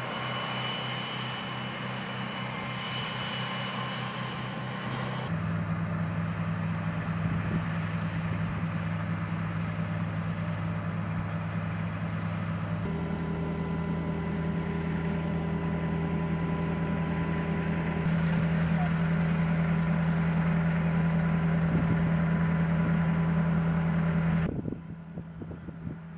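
M109A7 Paladin self-propelled howitzer's diesel engine running at a steady idle, with a deep, even hum. The sound changes abruptly three times as the shots change, about five seconds in, about halfway and near the end, but stays a steady idle throughout. No gun firing is heard.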